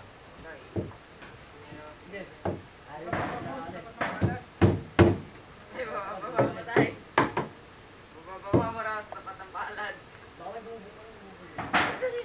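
Hammer striking wooden boards: a scattered series of sharp knocks, the loudest three close together about four to five seconds in, then three more about two seconds later, with people's voices between them.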